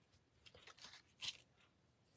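Faint rustling of a sheet of scrap paper being handled and laid down on a craft mat, a few short brushes in the middle, the last one the loudest.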